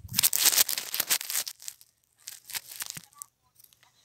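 Close rustling and crackling handling noise right against the microphone, loudest in the first second and a half, then a few softer scrapes.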